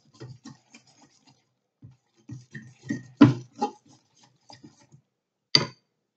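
Metal fork stirring and beating an egg-and-flour mixture in a ceramic bowl: irregular clinks and taps of the fork against the bowl, the loudest about three seconds in.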